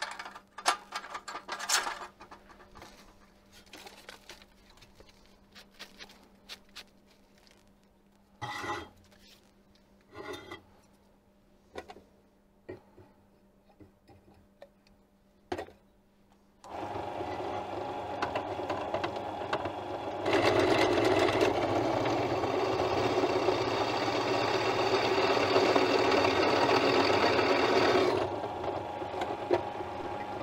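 Short clinks and knocks of steel plates and tools being handled, then just past halfway a bench pillar drill's motor starts. About three seconds later the bit bores into a steel plate, much louder and harsher for about eight seconds, before the drill runs on unloaded.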